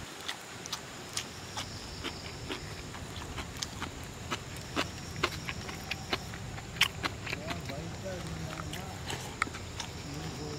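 Eating by hand from a stainless steel plate: irregular sharp clicks and taps as fingers mix rice and curry against the steel, with chewing. A high insect hum comes and goes behind.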